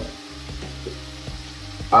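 Carrots and green peas sizzling softly in a steel kadai over a low gas flame, with a few faint small clicks as salt is sprinkled over them.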